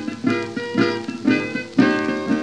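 Acoustic guitar playing a short blues fill, a run of plucked notes, between sung lines of a 1934 country blues recording. The sound is the thin, narrow-range sound of an old 78 rpm record transfer.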